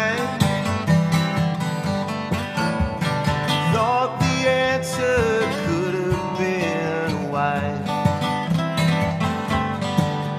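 Live band playing a country-folk song, led by acoustic guitar, with a melody line that slides in pitch over the chords.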